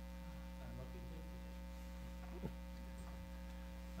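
Steady electrical mains hum in the meeting room's audio feed, a low buzz with many even overtones, with one faint tap about two and a half seconds in.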